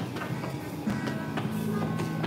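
Background music with held instrumental notes.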